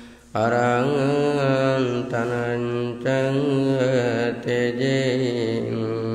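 A Buddhist monk chanting Pali verses in one low male voice. The notes are long and melodic, in phrases with short breaks for breath. The chant starts about a third of a second in.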